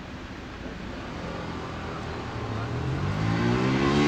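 A road vehicle's engine accelerating along the street, its note rising steadily in pitch and getting louder over the last few seconds, over a steady traffic hum.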